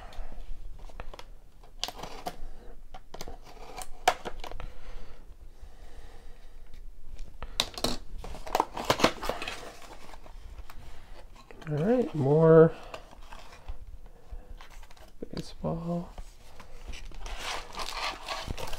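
A cardboard box of baseball card packs opened and handled: cardboard flaps tearing and folding, with irregular clicks and crinkling from foil-wrapped packs.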